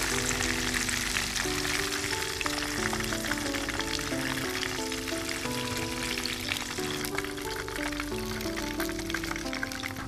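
Hot oil sizzling steadily in a frying pan as breadcrumb-coated prawns deep-fry, under background music: a simple melody of held notes stepping up and down.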